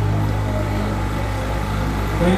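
A steady low hum with faint background noise, with no music or speech.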